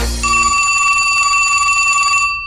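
Telephone bell ringing: one continuous, rapidly trilling ring that starts about a quarter second in, just after a low thud, and is still sounding at the end.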